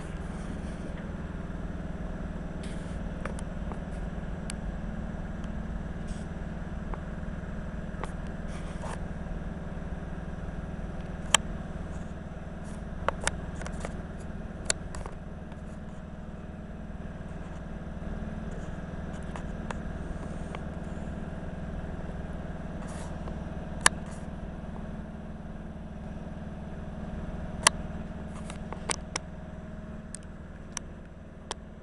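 Steady low hum of an EN57 electric multiple unit standing at the platform, with a few sharp clicks scattered through.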